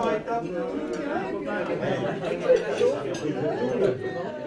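Chatter of a roomful of diners talking over one another at their tables, in a large room.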